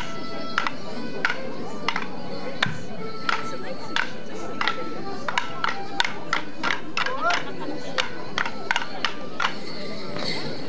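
Border morris dancers' wooden sticks clashing together on the beat, about one clack every two-thirds of a second, coming quicker from about halfway, over band music playing the dance tune.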